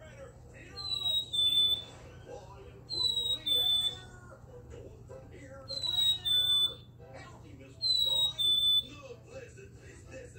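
A plush black-capped chickadee toy's sound chip plays a recorded chickadee fee-bee song four times, once each time the toy is squeezed. Each song is two clear whistled notes, the first higher and gliding slightly down, the second lower and steady.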